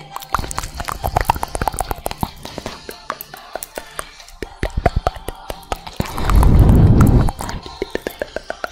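Close-miked ASMR mouth sounds: a quick, irregular run of tongue clicks and lip smacks into a microphone. A loud, low rumble lasting about a second comes near the end.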